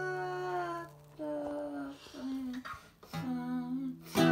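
Wordless humming in short phrases, with an acoustic guitar note left ringing low beneath it at the start and again near the end.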